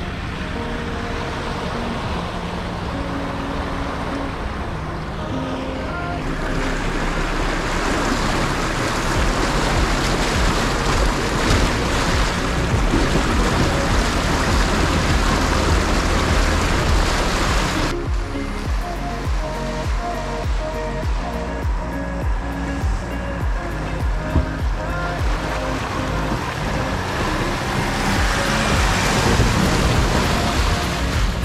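Background music over the rush and splash of water as 4x4s wade through a shallow river. The water is loudest through the middle, and the music shifts to a steadier beat a little past halfway.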